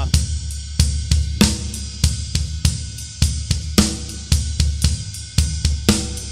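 A drum kit playing a slow double-bass shuffle: a swung triplet ride cymbal pattern, snare on two and four, and bass drum strokes from two pedals, with the left foot adding the 'a' of each beat. The hits are evenly spaced over a steady cymbal wash.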